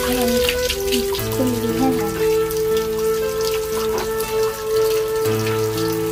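Background music of slow, held melody notes over water splashing, as hands scoop water from a plastic basin onto a head.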